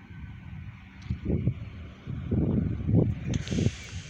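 Wind buffeting the phone's microphone in irregular low rumbling gusts, growing stronger about a second in. A brief hiss joins near the end.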